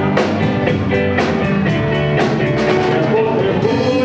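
Live dance band playing, with acoustic guitar, keyboard and a drum kit keeping a steady beat of about two strokes a second; it is mostly instrumental here, with little or no singing.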